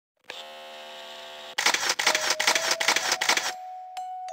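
Opening of a slideshow's song track: a held synth chord, then about two seconds of rapid crackling clicks over a faint held note, which settles into a single sustained tone as the music starts.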